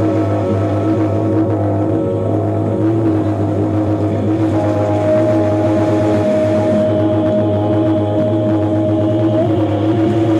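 Live electronic drone music: layered sustained tones over a steady low hum, with a higher held tone coming in about halfway through.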